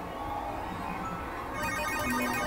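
Electronic gaming machine (poker machine) sounds: a steady electronic tone, then from about one and a half seconds in a fast, ringing jingle of repeated beeps, the machine's payout sound for a small win.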